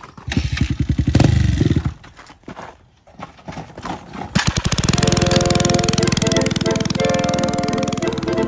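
A dirt bike engine revs briefly in rapid low pulses for about the first two seconds. From about four seconds in, music with a steady beat takes over.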